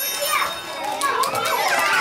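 Several young children's high voices talking and calling out over one another.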